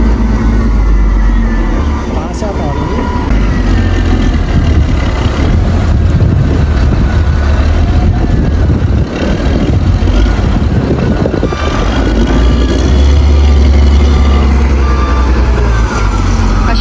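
A Caterpillar 938G wheel loader's diesel engine runs steadily as a deep, loud drone while the machine works. Near the end comes a run of short, evenly spaced beeps typical of a reversing alarm.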